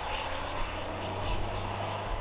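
Steady jet aircraft engine noise, a dense rushing sound with a low hum underneath.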